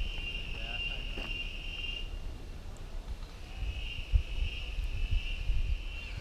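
Insects chirring in one steady high-pitched drone that stops about two seconds in and starts again about a second and a half later, over a low rumble.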